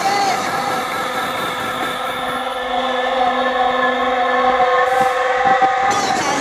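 Electronic dance music over a festival PA: a held synthesizer chord with no beat, its high end filtered away for a few seconds in the middle before opening up again near the end.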